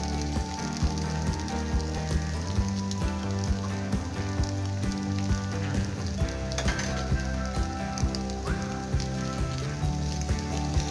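Minced beef and potato filling sizzling in a frying pan as it is stirred with a spatula, under background music with held chords and a steady beat of about two clicks a second.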